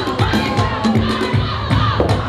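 Loud dance music with a steady beat of about three strokes a second, with an audience cheering and shouting over it.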